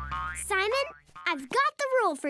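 The children's song's backing music ends within the first second. Short, bending cartoon voice sounds follow in several brief bursts.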